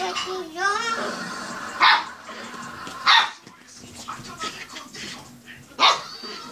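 A small puppy barks three short, sharp yaps, about two, three and six seconds in, while playing. A young child's squealing voice comes at the start.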